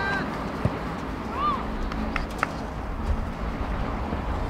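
Outdoor football-pitch ambience: scattered shouts and calls from players and spectators over a steady low rumble of wind and background, with a short thump about half a second in.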